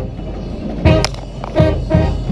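Marching band playing, with two loud accented hits from the band about a second in and again half a second later. It is heard through a camera riding on a spinning color guard flag pole, so rumbling handling and air noise run under the music.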